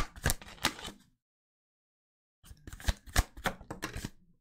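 A deck of Romance Angels oracle cards being shuffled and handled in the hands: a quick run of sharp card clicks and snaps for about a second, a silent gap, then another run in the second half as a card is drawn.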